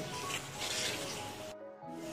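Wooden spatula stirring a thick mango and sugar glaze as it cooks in a nonstick pan, a soft scraping and sizzling, under quiet background music. The sound cuts out briefly near the end.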